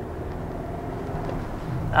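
Cabin sound of a 2019 BMW X1 xDrive28i driving in sport mode: a steady low hum from its turbocharged four-cylinder engine mixed with tyre and road noise, growing slightly louder. The turbo itself can't really be heard.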